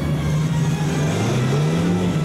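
Car engine pulling hard at speed, its pitch rising in the second half as the car accelerates.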